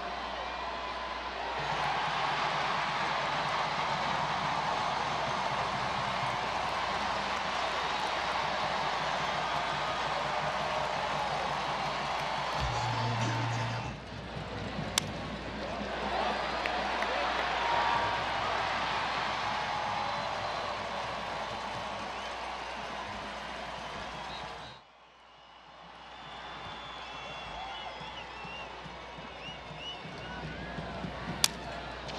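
Ballpark crowd cheering loudly as hits fall in and runs score, with a sharp crack of a bat on the ball about halfway through, followed by another swell of cheering. Near the end the cheering cuts off and gives way to quieter crowd murmur.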